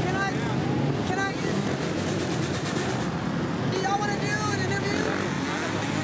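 A group of motorcycles and dirt bikes riding past on a city street, their engines revving up and down, with voices in the background.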